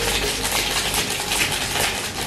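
Electric kettle heating water toward the boil: a steady hiss with a fine crackle.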